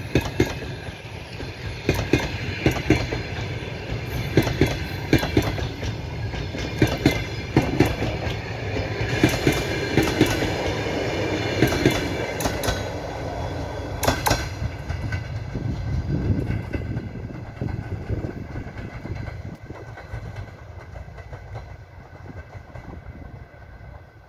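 Passenger coaches rolling past, their wheels clicking repeatedly over rail joints over a steady rumble. The clicking stops about two-thirds of the way through, and the rumble fades as the last coach draws away.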